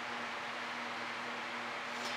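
Steady background hiss with a faint continuous hum on one low note, and no other events.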